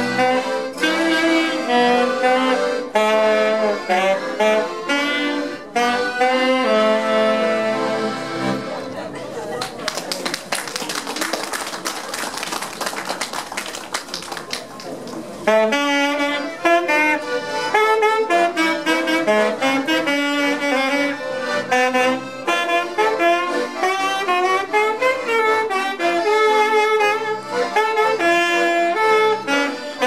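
Two accordions playing a folk-style song with a choir singing along. About nine seconds in, the music gives way to some six seconds of clapping, and then the accordions and singing start again.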